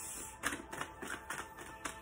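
A tarot deck being shuffled by hand: a run of light, irregular clicks and flicks as cards slip from one hand into the other, starting about half a second in.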